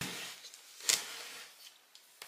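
Handling noise from a knife block set: a short scrape, then one sharp click about a second in and a smaller tick near the end, as knives with hard-plastic handles are set into a painted-wood knife block.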